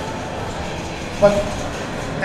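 Steady background noise of an exhibition hall, picked up by an ambient microphone, with a man's single word about a second in.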